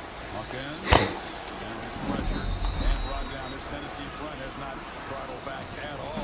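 Football broadcast audio playing low: faint commentary over crowd noise, with one sharp knock about a second in.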